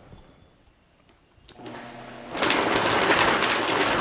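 Vitamix blender starting up about one and a half seconds in, its motor rising in speed, then at about two and a half seconds running loud as it blends ice into a thick oat milk shake.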